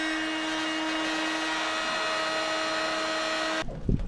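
Handheld electric heat gun running steadily, its fan motor humming and blowing hot air onto the end of a vinyl bilge hose to soften it. It cuts off shortly before the end, followed by a few low knocks as the hose is worked onto a fitting.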